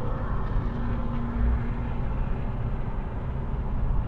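Steady low rumble of tyre and wind noise inside a car cruising at highway speed on concrete pavement, with a faint hum for about a second near the start.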